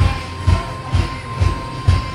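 Music with a steady bass-drum beat about twice a second and a long held note over it, played in a classroom.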